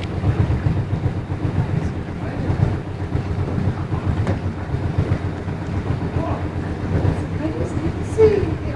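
Steady low rumble of a small boat's engine running as it motors along, echoing in a brick canal tunnel.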